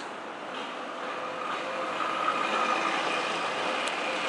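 Street traffic: a motor vehicle engine running close by on a busy city street, with a steady hum that grows slightly louder through the middle.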